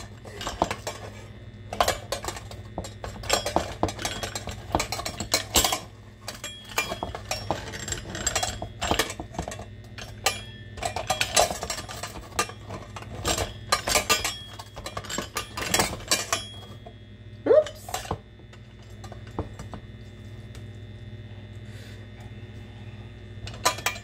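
Hand-cranked stainless steel food mill grinding tomatoes: metal scraping and clinking in irregular strokes as the blade is pressed round over the perforated disc. The strokes stop about sixteen seconds in, with one more shortly after.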